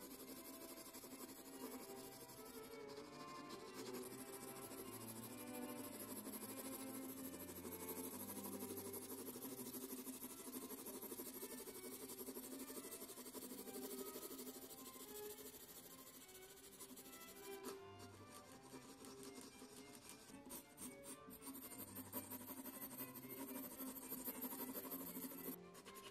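Soft background music with held notes, and the faint scratch of a mechanical pencil shading paper beneath it.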